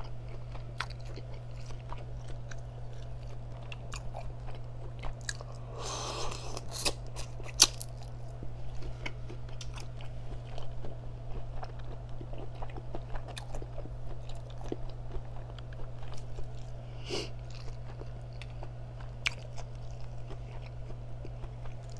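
Close-miked chewing and biting of seafood boil, wet mouth sounds with many small clicks, and a short rushing sound about six seconds in. A steady low hum runs underneath.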